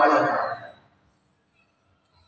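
A man singing or chanting, holding a note that fades out under a second in, then silence.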